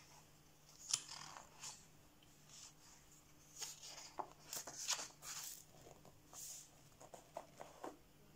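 Pages of a paper colouring book being turned by hand: faint, scattered rustles and flicks of paper, the clearest about a second in and again around the middle.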